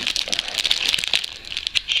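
Plastic and foil chocolate-bar wrappers crinkling as they are handled, a dense run of small crackles.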